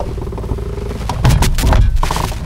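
Glider canopy being pulled down and latched: a cluster of sharp knocks and clatter in the second half, over the steady low drone of the tow plane's engine.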